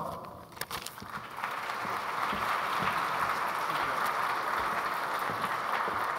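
Audience applauding, starting about a second and a half in and holding steady.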